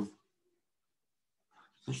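Near silence: a man's speech breaks off just at the start and resumes near the end, with nothing audible in between.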